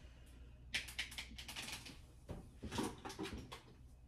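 Light clicking and clattering of kitchen containers being handled and rummaged through, in two bursts: one about a second in and a longer one past the middle.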